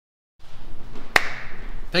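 Dead silence, then the audio cuts in with a live microphone's room noise. A single sharp tap sounds about a second in, and a man starts to speak at the very end.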